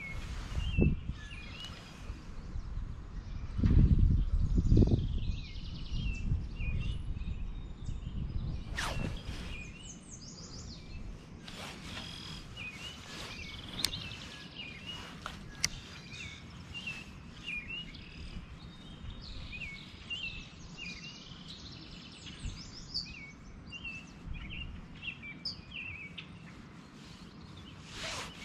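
Small birds chirping and calling again and again in the background, with a low rumble about four seconds in that is the loudest sound.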